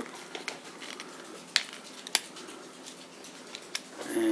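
Plastic case of a Cortex quartz clock movement being wiggled apart by hand, its snap-fit lid giving a few small, sharp plastic clicks: the loudest about a second and a half in and just after two seconds, another near the end.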